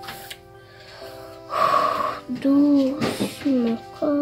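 Background music with held notes, and a voice singing long gliding notes over it from about a second and a half in.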